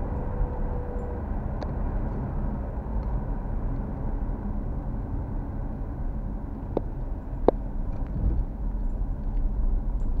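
Car driving on a city road, heard from inside the cabin: a steady low rumble of engine and tyre noise. Two short sharp clicks come less than a second apart, about seven seconds in.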